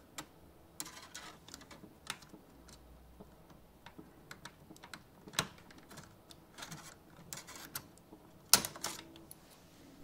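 Light plastic clicks and taps of a small screwdriver prying a pinch roller out of a Philips DCC cassette tape mechanism, the roller's snap-fit clicking free. The clicks are scattered and faint, with a sharper one a little past halfway and the loudest near the end.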